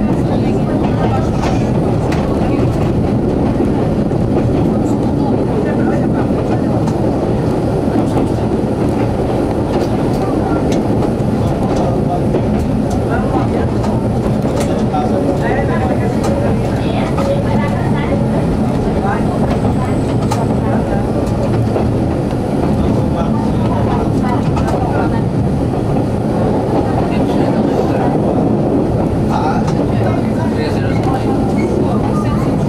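Steady running noise of a CP 9500-series metre-gauge diesel railcar heard from its front cab: engine drone and wheels on the rails, continuous and even.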